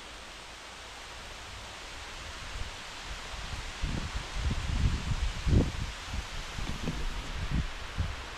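Wind rustling through tall trees, a steady hiss, with gusts rumbling on the microphone from about halfway through.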